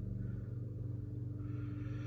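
A steady low hum with a faint higher tone above it, unchanging, with no other events.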